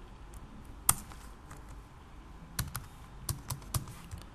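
Computer keyboard keystrokes while code is being typed: a single key press about a second in, then a quick run of five or six taps near the end.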